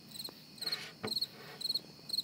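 Cricket-chirping sound effect: short, high chirps repeating two to three times a second, the comic 'crickets' used for an unanswered question. A light knock about halfway through.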